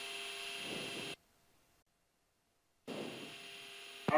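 Steady low cockpit hum in a Gulfstream G-IV jet, with a faint steady tone in it. A little after a second in, the sound drops out to total silence for nearly two seconds. The hum then returns slightly quieter.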